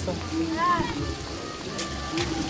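Water from a domed park fountain spilling and splashing into its basin, a steady patter. Voices and music sound in the background.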